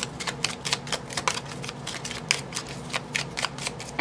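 A deck of oracle cards shuffled by hand: a quick run of short card snaps, several a second.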